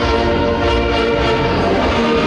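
Saxophone ensemble playing held, sustained chords in harmony over a low bass pulse.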